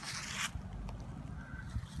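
A short scraping rustle, like dry brush or leaves brushing past, then low rumbling handling noise on the microphone with a few faint clicks.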